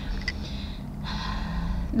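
A woman drawing in a breath, audible for just under a second from about a second in, as she takes air before speaking again.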